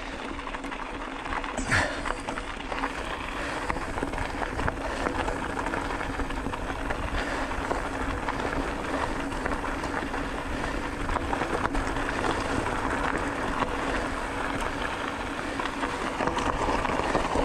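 Bicycle tyres rolling over a gravel dirt road: a steady crunching hiss full of small clicks and rattles, with a low steady hum, and a sharper knock about two seconds in.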